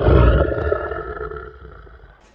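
A lion's roar sound effect, starting suddenly and fading away over about two seconds.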